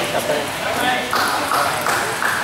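Table tennis ball clicks: three quick, sharp hits about a third of a second apart in the second half, over voices in a hall.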